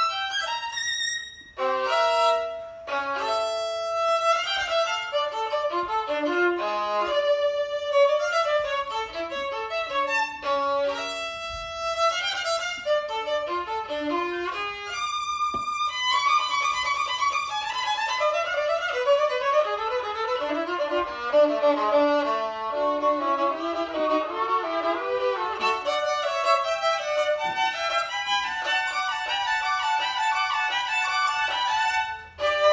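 Solo violin played with the bow: separate notes with brief breaks through the first half, then from about halfway a fast, unbroken run of short notes.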